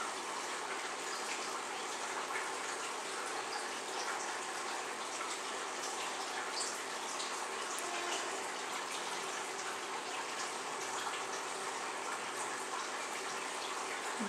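Steady, even background hiss with a faint low hum, like air or a fan running, and no other clear sound.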